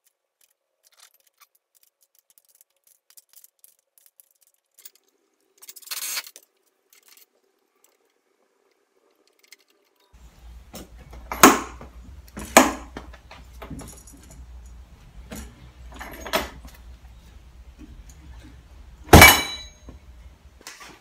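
Sharp metallic clinks and clacks of steel workbench caster hardware being handled and fitted, a few spaced apart in the second half, ending in one loud snap, a caster's foot pedal being kicked. The first half is nearly quiet apart from a brief rustle.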